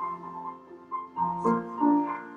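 Piano playing a slow piece: held chords under a melody, with a few new notes struck in the second half.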